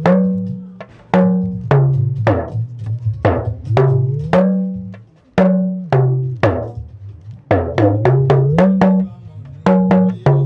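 Hourglass talking drum struck with a curved stick and the hand, playing a rhythm of sharp, ringing strokes whose pitch steps between higher and lower notes and sometimes glides as the drum is squeezed under the arm. The playing breaks off briefly about five seconds in.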